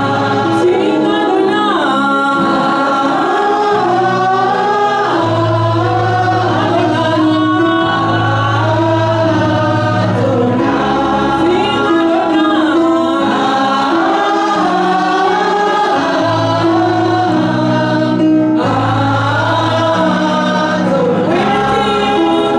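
Live gospel worship song: women singing together into microphones over a Yamaha electronic keyboard playing held chords and bass notes that change every second or two.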